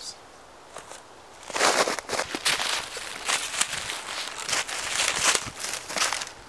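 Footsteps crunching through snow and dry leaf litter on the forest floor, irregular steps beginning about a second and a half in.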